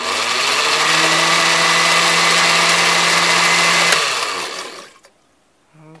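A countertop blender's motor starts up, its whine rising over the first second, then runs steadily while chopping torn paper scraps and water into pulp for seed paper. It is switched off about four seconds in and winds down.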